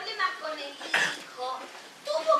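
Short bits of women's voices on a theatre stage, broken about a second in by one brief sharp noise.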